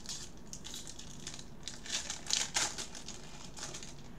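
Foil wrapper of a Bowman Draft baseball card pack crinkling in gloved hands, in irregular crackly rustles that are loudest about halfway through.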